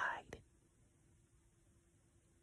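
A spoken word trailing off in the first moment, then near silence: room tone with a faint steady hum.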